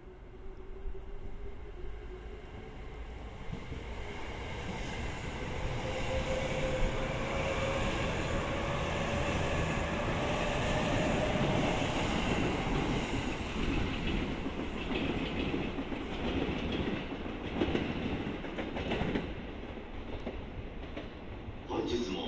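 JR 209 series electric train in yellow-and-blue livery pulling away from the platform. The inverter-driven traction motors give a whine that rises steadily in pitch as it accelerates. Then the wheels clatter rhythmically over the rail joints as the cars pass.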